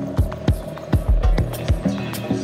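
Electronic dance music with kick drums in an uneven, broken-beat pattern, held bass notes underneath and fine ticking percussion on top.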